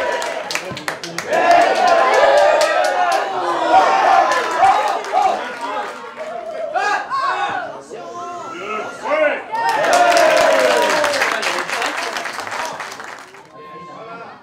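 Several voices shouting and calling on and around a football pitch, with a few sharp claps in the first couple of seconds; the calls ease off near the end.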